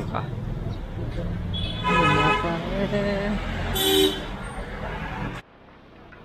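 Street traffic with a steady engine rumble and vehicle horns: one horn held for about a second about two seconds in, and a short, sharp honk about four seconds in. The sound drops off suddenly near the end.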